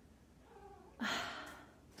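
A kitten's faint, short meow about half a second in, followed about a second in by a woman's breathy sigh.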